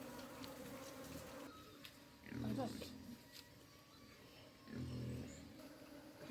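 Two short, low-pitched vocal sounds, about two and a half seconds apart: the first rises and wavers, the second is held briefly. Between them only a faint background.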